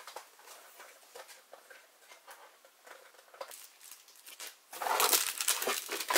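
Unboxing handling noise: scattered light taps and rustles of cardboard and plastic packaging, then louder paper rustling near the end as a printed card is handled in the box.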